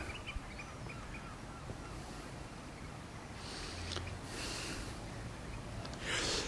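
Eurasian oystercatchers calling faintly from the estuary below, with a few short high piping calls in the first second or so. A soft rushing noise swells in the middle.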